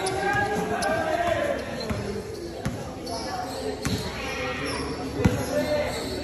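A basketball dribbled on a hard court, a handful of sharp bounces about a second apart, under players' voices calling out.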